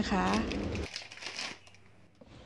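Plastic packaging crinkling as it is handled, fading out about a second and a half in.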